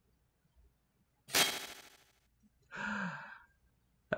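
A person's loud exhale into a close microphone, followed about a second later by a short, quieter voiced sound that falls in pitch.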